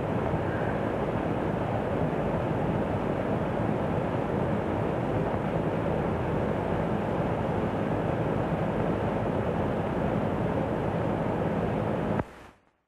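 Steady running noise of a motor car under way: an even rumble and road hiss with a faint low hum.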